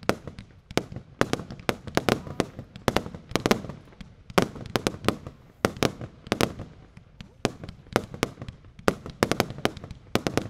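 Consumer fireworks, cakes and aerial shells firing and bursting: a rapid, irregular run of sharp bangs, some coming in quick clusters.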